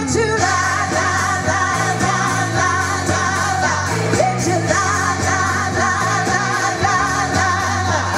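Live blues band with several women singing together, holding long notes with vibrato over electric guitar, bass and drums.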